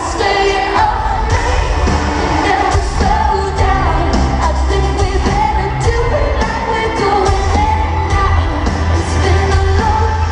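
Live pop song played loud through an arena PA: a woman singing lead into a microphone over heavy bass and a live drummer and guitarist, picked up from within the crowd.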